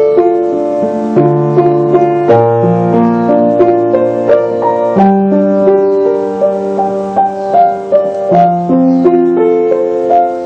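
Solo piano played slowly and gently: low bass notes held for a second or more under a steady run of higher melody and broken-chord notes.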